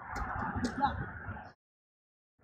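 Wind rumbling on an outdoor microphone with a faint voice in it, then the sound cuts out completely about one and a half seconds in.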